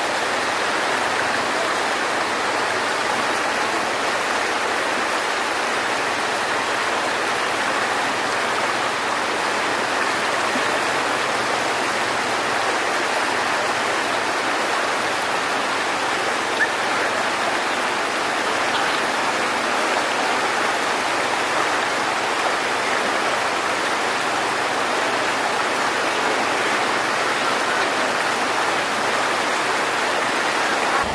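Fast-flowing floodwater rushing and churning across a road, a steady loud wash of water noise.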